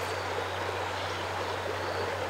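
Creek water running over a shallow riffle: a steady rushing of water.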